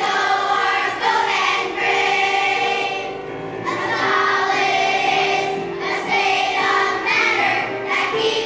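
Children's choir singing a song.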